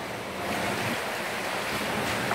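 Swimmers splashing through the water in breaststroke, heard as a steady wash of pool water noise.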